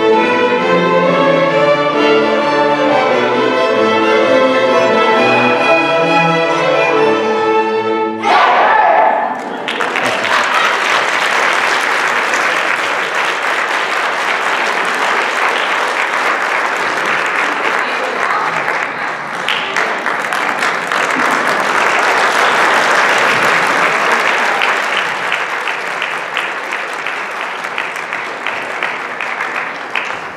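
A string band of fiddles, with cello and accordion, plays the last bars of a tune, ending about eight seconds in. The audience then applauds for the rest of the time, and the clapping eases off near the end.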